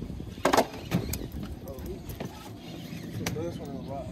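Scattered sharp knocks and clicks, the loudest about half a second in, with a brief bit of voice a little after three seconds.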